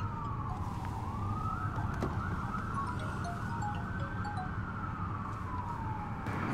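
A siren wailing in slow sweeps: it falls, rises again about a second in, holds, then falls near the end. Under it a phone is ringing in short notes, over a low steady rumble.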